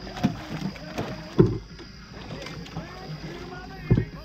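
Bowfishing line being hauled in by hand over the side of a boat, with water splashing and several sharp knocks against the boat, the loudest about a second and a half in and again near the end. A steady high whine runs underneath.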